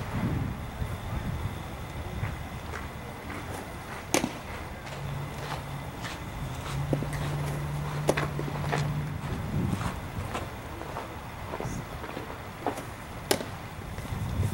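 A baseball smacking into leather gloves: three sharp pops several seconds apart as pitches hit the catcher's mitt and throws come back, plus a few fainter knocks. A steady low hum runs through the middle.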